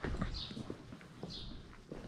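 Footsteps on a cobblestone street: a quick series of hard clicks. Two short high chirps are heard, about half a second in and again near one and a half seconds.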